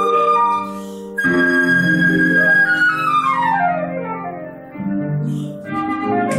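Concert flute playing a classical phrase: a run of notes, then a long held high note about a second in, followed by a quick descending run, with sustained lower accompaniment underneath.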